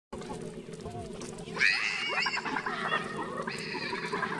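Macaque giving a run of high-pitched, wavering calls, starting about one and a half seconds in and going on in several bursts over a steady low background.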